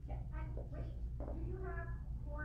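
Indistinct voices off-microphone, a short conversation in several brief phrases, over a steady low electrical hum.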